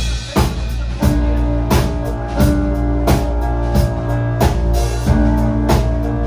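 Live rock band playing a song with drum kit, bass, keyboards and guitars: after a few drum hits the full band comes in about a second in with a steady beat.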